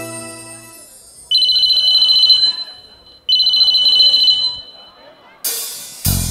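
A band's last notes die away, then a high electronic two-tone beep sounds twice, each about a second long, like a buzzer or ringtone played through the PA. A loud hit comes near the end as the music starts again.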